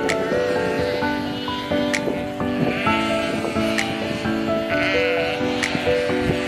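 Calm background music with held notes and a light tick about once a second, over a flock of sheep bleating, with three clear bleats: near the start, midway and near the end.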